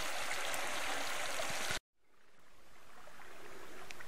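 Shallow river running over gravel, a steady rush of water that cuts off abruptly a little under two seconds in; after a brief silence a much quieter outdoor hush fades in.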